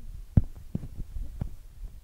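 Handling noise from a phone being moved around while recording: several dull knocks with low rubbing and rumble, the loudest about a third of a second in.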